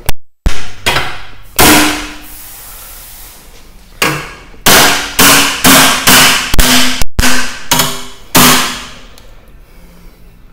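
About a dozen ball-peen hammer blows on a bent metal bracket of a crash-damaged car front end, each a sharp strike with a short metallic ring: the bracket is being hammered straight. Three blows come first, then a pause of about two seconds, then a steady run of roughly two blows a second that stops shortly before the end.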